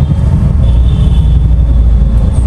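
Steady low rumble inside a Tata Nano's cabin: its small rear-mounted two-cylinder engine and the road noise as it moves slowly in wet traffic. A thin, steady high whine joins about half a second in.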